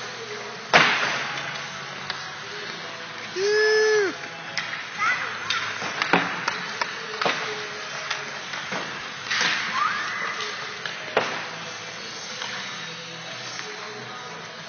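Hockey sticks and pucks clacking on the ice in a rink, a handful of sharp hits with the loudest about a second in, and a brief distant shout midway. A low steady hum runs underneath.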